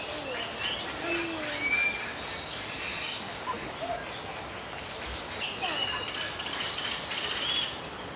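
Small birds chirping and whistling: short, scattered calls, several of them brief rising or falling whistles, over a steady outdoor background hiss.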